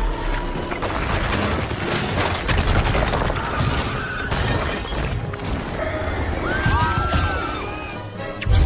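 Film score music over crashing and shattering debris, a dense string of clattering impacts like bricks and rubble falling.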